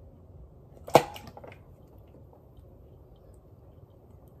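Plastic water bottle and glass tumbler being handled: one sharp click about a second in, followed by a few lighter clicks.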